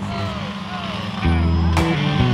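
Race car engines running around a short oval track, their pitch rising and falling. Background music with a bass line comes in a little over a second in and is louder.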